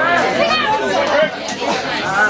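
Several spectators' voices chattering and calling out, overlapping.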